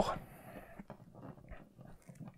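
Faint, scattered light clicks and ticks of a plastic action figure and its accessory being handled, as a weapon is pressed into the figure's hand.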